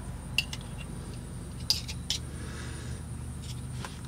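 A handful of light metal clicks and taps as a pick works at the seals inside a steel hydraulic cylinder gland, over a steady low hum.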